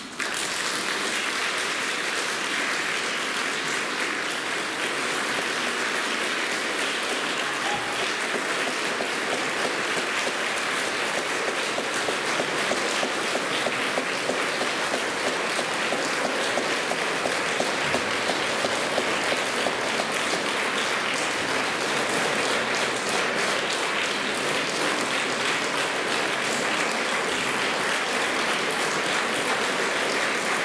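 Audience applause that breaks out as the last piano chord ends and keeps up at an even level.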